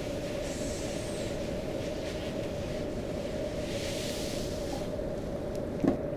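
A steady low hum with a constant mid-pitched tone held throughout, and a short knock near the end.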